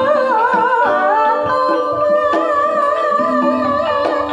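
Javanese gamelan playing, its bronze metallophones and kettle gongs sounding steady ringing tones, with a sung vocal line of wavering, gliding pitch on top.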